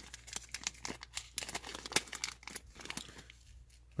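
A pack of flash tinsel being handled: a quick, uneven run of plastic crinkling and crackling for about three seconds that stops near the end.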